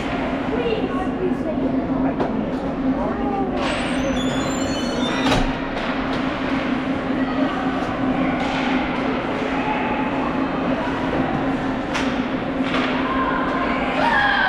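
Indoor ice hockey rink ambience during a game: a steady low hum under distant shouting voices, skates scraping the ice and a few sharp knocks, the clearest about five seconds in and again near twelve seconds.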